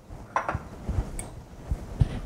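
Faint handling sounds of dishes on a kitchen counter: a few soft, low knocks about a second in and again near the end.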